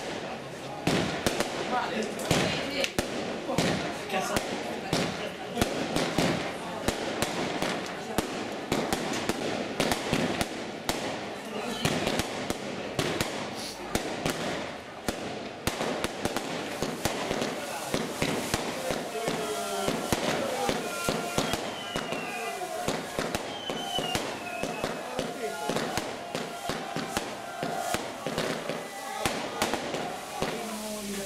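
Fireworks display: aerial shells firing and bursting in a rapid, continuous string of bangs and crackles.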